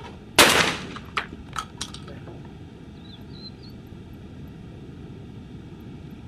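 A single shot from a 12-gauge Baikal semi-automatic shotgun fired at a clay target about half a second in, followed by a few fainter sharp cracks over the next second and a half.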